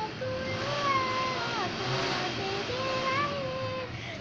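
A young girl singing, holding long notes that bend up and down in pitch.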